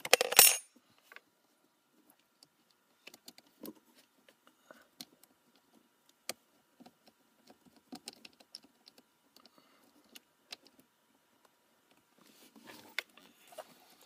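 A brief, loud metallic clatter of small metal hardware at a car battery terminal right at the start, then scattered faint clicks and taps as hands work the charger wires and terminal fittings.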